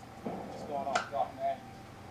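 Brief speech, dialogue from a movie heard as it plays on a screen, over a faint steady hum.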